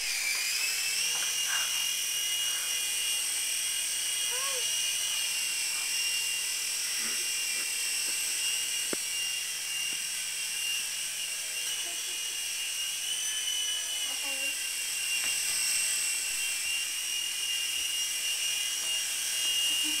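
Small coaxial RC toy helicopter's electric motors and rotors whining steadily at a high pitch, the pitch dipping briefly near the start and shifting slightly with the throttle.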